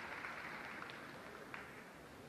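Faint, steady arena ambience, the low hum of a large, sparsely filled hall, with a couple of light ticks about a second in and again a half-second later.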